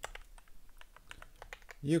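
Computer keyboard keystrokes: a quick run of key clicks while code is typed into a text editor.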